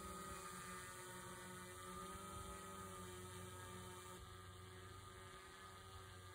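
Fan-boat drone's air propeller and motor giving a faint, steady hum that slowly fades as the boat moves away.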